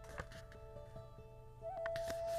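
Soft background music with long held notes, a new note entering near the end, under faint crinkles of paper being folded by hand.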